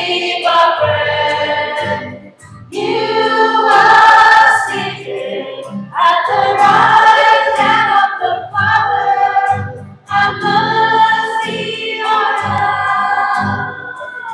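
A small choir of women singing a hymn into microphones, in phrases broken by short pauses about two and a half, six and ten seconds in.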